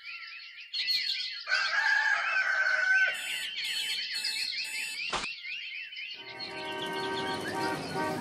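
Birds chirping, with an alarm clock beeping four times and then a sharp click as it is switched off. From about six seconds in, traffic noise with a steady horn-like tone comes in.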